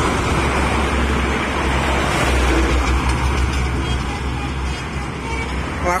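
Steady highway traffic noise from trucks and buses passing on a toll road, with a strong deep rumble that eases slightly near the end.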